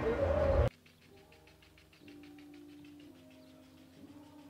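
A louder sound breaks off abruptly near the start, leaving faint bird calls: a quick run of high chirps and a few low, held notes.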